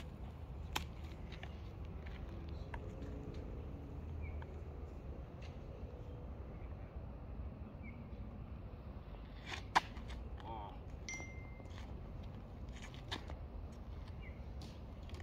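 Outdoor ambience dominated by a steady low wind rumble on the microphone, with a few faint clicks. A single sharp click stands out about ten seconds in, followed by a short high whistle-like tone.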